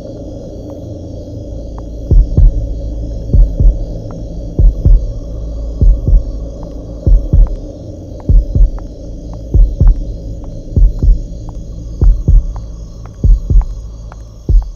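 Suspense film score: a heartbeat-like pulse of low double thumps, about one beat every second and a quarter, starting about two seconds in, over a steady low drone with a thin high sustained tone.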